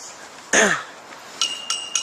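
Wrestling ring bell struck about three times in quick succession near the end, a high ringing tone that signals the start of the match. Before it, about half a second in, comes a short, loud cough-like vocal sound.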